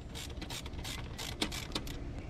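Ratchet wrench with a 3/8-inch extension and 10 mm socket clicking as it turns a nut on the back of a removed steering wheel's hub. A few light clicks come at the start, and a quick run of about four comes a little past halfway.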